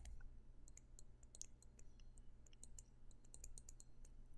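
Faint, irregular clicks and taps of a stylus on a pen tablet as handwriting is written, over a low steady hum.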